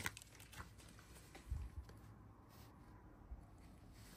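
Near silence with a few faint, soft handling sounds of a stack of trading cards being sorted by hand, the clearest a dull bump about one and a half seconds in.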